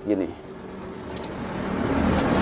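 A man's voice finishing a short word, then a pause in his speech filled with low background noise and a few faint clinks about a second in.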